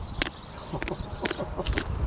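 Ostrich pecking at a wristwatch, its beak striking the watch and the wire mesh in a quick, irregular series of sharp taps, about five in two seconds.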